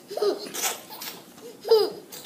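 A toddler squealing and giggling in a few short, high-pitched cries, the loudest near the end.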